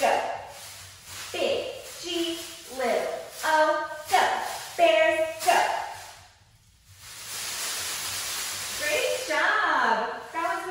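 A woman shouting a chanted cheer in short, strongly pitched syllables for about six seconds. A brief pause follows, then about two seconds of steady rustling hiss, and her speaking voice starts again near the end.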